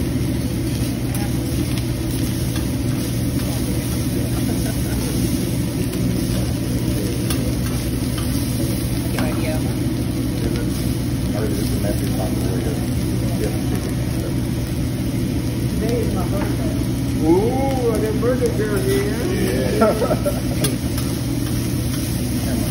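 Fried rice sizzling on a steel hibachi griddle while a metal spatula scrapes and turns it, with occasional light ticks of the spatula on the plate. Underneath runs a steady low hum, and there is background chatter near the end.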